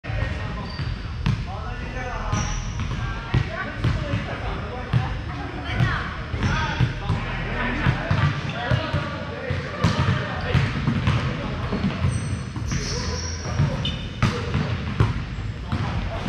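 Volleyballs being hit and bouncing on a wooden gym floor: many sharp slaps and thuds, echoing in a large hall, over the continuous chatter and calls of many players.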